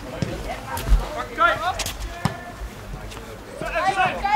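A football kicked long: a sharp thump of boot on ball, heard across an open pitch, with players' short shouts and calls afterwards.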